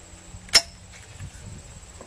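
A single sharp metallic clack about half a second in: the bolt of a Remington Nylon 77-pattern (Mohawk 10C) semi-automatic .22 rifle snapping forward as it is charged, chambering a round.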